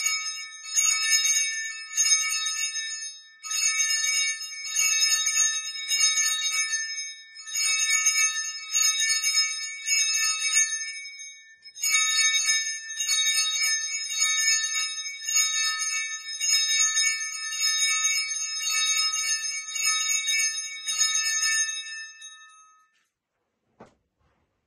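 Small bells shaken and rung in a series of bursts with brief pauses between them, always the same cluster of bright, high pitches, dying away shortly before the end.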